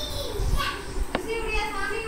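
High-pitched children's voices in the background, with a single sharp click about a second in.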